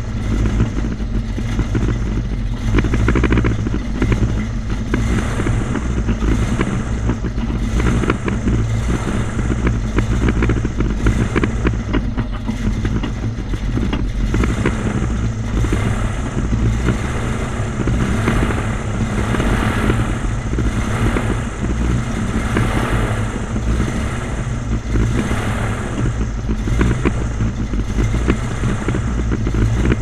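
Airboat engine and propeller running loudly and steadily as the boat cruises along a canal.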